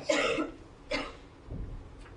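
A person coughing: a longer cough just as the pause begins and a shorter one about a second in. A faint low thump follows near the end.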